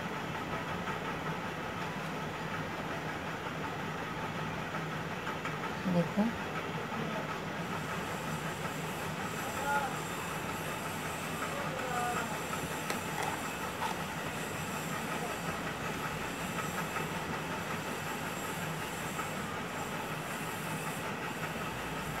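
Steady background hiss. A few brief, faint voice-like sounds rise above it now and then.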